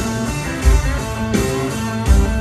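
Live rock band playing an instrumental passage: electric guitars to the fore over bass and a steady drum beat, heard from the audience.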